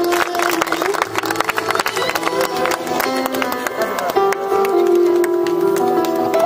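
Live instrumental music played on an electronic keyboard: a melody of long held notes over a percussion beat, starting as an introduction before a poem is read.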